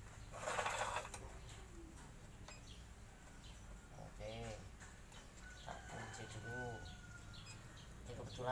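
Hands handling the parts of a new miter saw while assembling it: a brief scraping rustle about half a second in, over a low steady hum.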